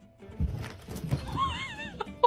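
Cats startling and scrambling away from a door, with thumps on the floor starting about half a second in. Near the end comes a wavering high-pitched cry lasting about half a second.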